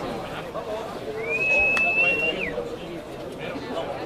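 A referee's whistle blown once for just over a second: a single steady high note that slides up at the start and drops away at the end, over the murmur of spectators' and players' voices.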